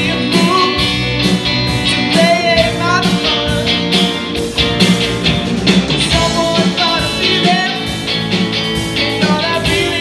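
A live rock band playing a mid-tempo song: electric guitars and bass over a drum kit, amplified in an auditorium.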